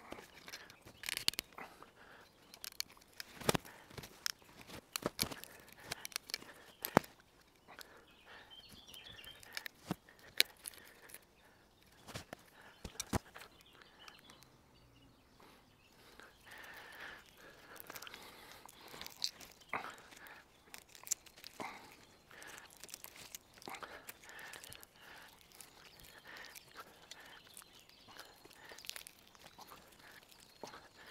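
A green, leafy branch twisted round and round by hand, its wood fibres cracking and snapping in sharp, irregular clicks as they break lengthways to make the branch pliable as a rope. The leaves rustle softly under the hands in between.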